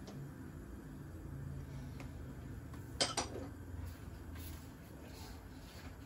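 A small glass bowl set down with a sharp clink, a quick double knock about three seconds in, over a low steady hum.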